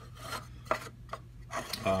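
A plastic model building's base scraping and rubbing across the layout surface as it is turned by hand, with a few light clicks.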